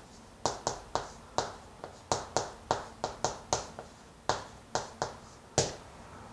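Writing on a green board, stroke by stroke: short sharp ticks and taps of the writing tip against the board, about two or three a second, which stop shortly before the end.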